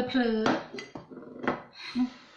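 Metal knife clinking against a ceramic plate about three times, the last the loudest, while a slice of crumble cake is cut and handled on it.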